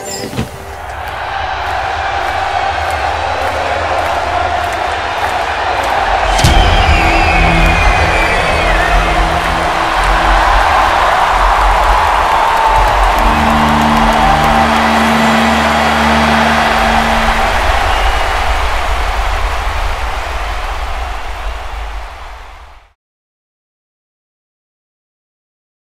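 A large stadium crowd cheering and screaming, building over the first few seconds, with a shrill whistle about six seconds in, over a low sustained hum. It fades and cuts off just before the end.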